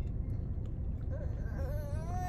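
Low, steady rumble of a car cabin. About halfway through comes a faint, wavering closed-mouth hum ('mm') from a person tasting a drink.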